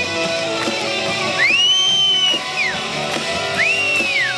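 Live rock band playing, led by amplified electric guitar with bass. Two high whistles rise, hold and fall over it, one starting about a second and a half in and another near the end.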